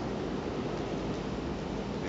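Steady background hiss of room tone, with no other distinct sound.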